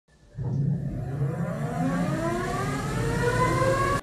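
Meepo City Rider 3 electric skateboard's dual motors spinning up on a roller dyno: a whine that starts about a third of a second in and rises slowly and steadily in pitch, over a steady low rumble.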